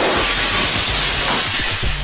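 Glass shattering in one continuous crash lasting nearly two seconds, starting abruptly: the crystal chandelier breaking.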